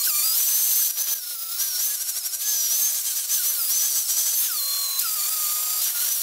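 Milwaukee angle grinder with a flap disc grinding a torch-cut steel I-beam edge to clean it up. It is a high motor whine with grinding hiss, the pitch wavering as the disc is pressed against the steel.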